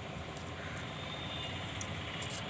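Steady low background rumble, like distant traffic or a running motor, with one short faint click near the end.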